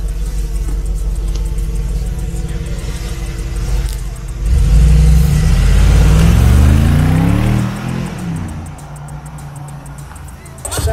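Mercedes G-Class SUV engine running low and steady as it pulls off, then accelerating hard about four and a half seconds in, its note rising for a few seconds before it fades as the vehicle drives away.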